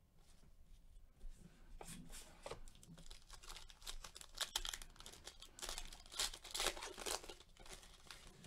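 Wrapper of a 2020 Panini Diamond Kings baseball card pack being torn open and crinkled by gloved hands: a run of sharp crackles starting about two seconds in, loudest in the second half.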